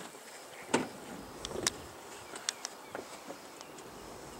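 A quiet stretch with a few short, sharp clicks and knocks, about seven in all at irregular spacing, the strongest a little under a second in, over a faint steady hiss.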